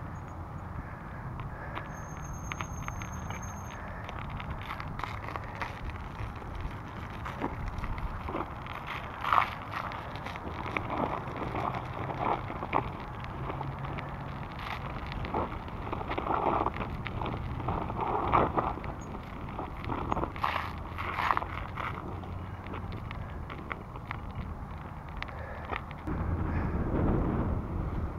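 Raleigh Redux bicycle tyres rolling over an icy, snow-crusted path, with irregular crackling and crunching as the tyres break the ice crust over the steady rolling noise. The rolling noise gets louder near the end.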